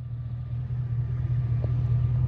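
A 1999 Chevy Silverado's 4.8-litre V8 idling, a steady low rumble that grows a little louder.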